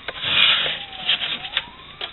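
Scraping and rubbing of slushy frost and ice in a freezer compartment, with a few light knocks. A faint tone glides down and back up in the background.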